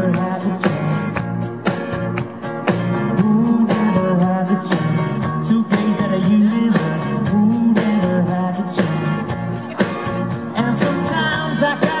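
Live rock band playing: electric guitars, drums keeping a steady beat and a bass line, with a male lead singer at the microphone.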